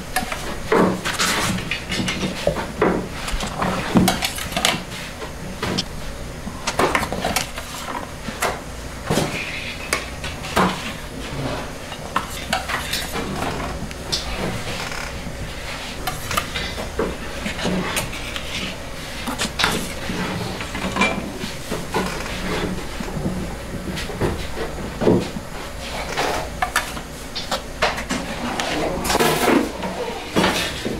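Irregular metal clinks, knocks and scrapes of a tool and the breads against the metal floor of a bread oven as puffed balloon bread is turned and shifted, over a steady low hum.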